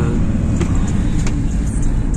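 Steady low rumble of a vehicle's engine and tyres on the road, heard from inside the cabin while driving.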